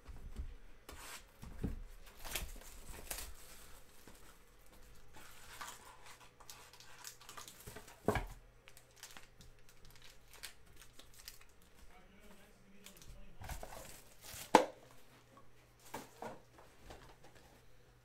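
A trading-card hobby box being torn open and its foil card packs crinkling as they are pulled out and stacked, with two sharp knocks, the second and louder one about two-thirds of the way through.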